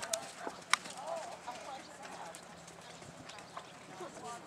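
Hoofbeats of a horse going round a sand show-jumping arena, with one sharp knock about three-quarters of a second in and a brief faint voice just after.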